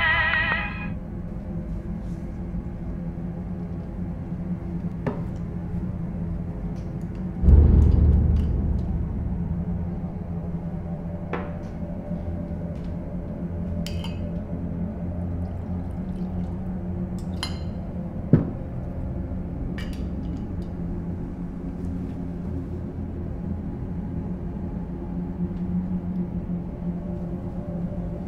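Singing from a small portable radio stops just under a second in, leaving a steady low drone of background music. A deep thud comes about seven seconds in, and glass clinks of a bottle against a glass sound a handful of times as a drink is poured.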